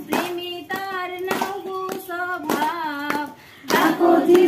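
Voices singing a Bengali Christian devotional song, kept in time by steady hand claps about every two-thirds of a second. The singing and clapping drop away briefly near the end, then come back louder.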